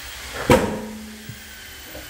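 A single sharp knock about half a second in, followed by a brief ringing, over low background noise.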